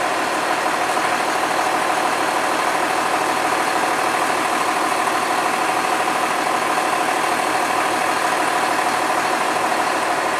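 A vehicle engine idling steadily, an even drone with a constant hum that holds unchanged throughout.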